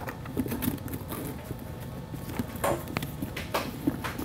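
Soft rustling and scattered small clicks of a ribbon being handled and tied into a bow, with a few slightly sharper ticks near the end.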